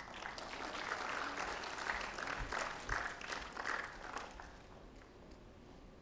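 Audience applauding, a round of clapping that dies away about four and a half seconds in.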